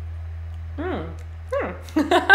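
A woman's two short closed-mouth hums ('mmm'), each quickly falling in pitch, about a second apart, over a steady low electrical hum.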